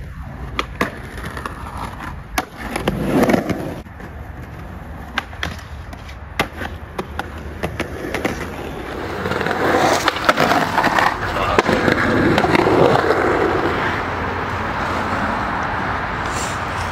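Skateboard urethane wheels rolling over a concrete walkway, with many sharp clacks along the way. The rolling grows louder and steadier from about halfway through.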